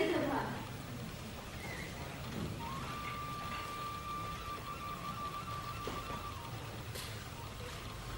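A thin, steady high-pitched tone held for about three and a half seconds, starting about three seconds in, over a faint background hum.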